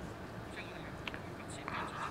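A pause in speech: a low, steady background hiss with a few faint voice sounds in the second half.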